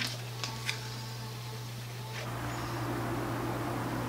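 Faint light clicks and scratches of a pointed weeding tool picking cut pieces out of iron-on vinyl on a cutting mat, over a steady low hum.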